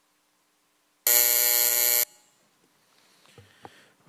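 An electronic buzzer sounds once, a steady, loud tone about a second long starting about a second in and cutting off abruptly, as the voting countdown runs out: the signal that closes the vote.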